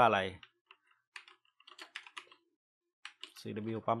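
Computer keyboard being typed on: light keystrokes in a quick run about a second in, with a few more taps near the end.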